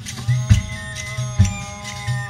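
Live folk band playing, amplified: a steady drum beat about once a second under a long held note.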